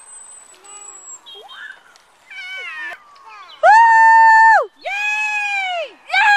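A spectator at a paddling race shouting long, drawn-out, high-pitched cheers. The loudest is a held call about a second long a little past halfway, followed by a slightly lower one near the end.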